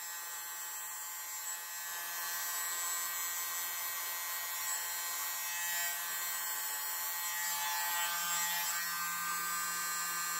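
Handheld mini electric blower, a keyboard-duster type, running steadily: an even small-motor whine with air rushing from its nozzle as it blows wet acrylic paint across the canvas.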